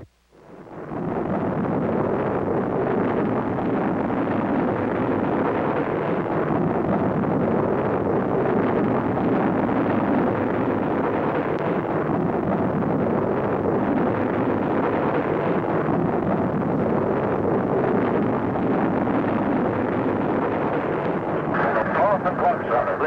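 Saturn IB rocket's eight first-stage engines firing at launch: a loud, steady roar that swells in over about the first second after a brief silence.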